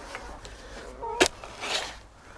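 A steel spade digging into loose, lumpy compost soil: one sharp hit a little over a second in, followed by a short gritty scrape as the blade cuts in.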